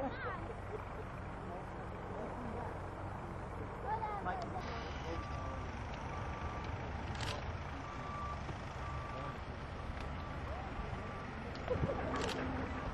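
A light aircraft's engine droning at a distance over a steady low rumble as the plane flies in. From about five seconds in, a vehicle's reversing beeper sounds repeatedly, roughly once a second.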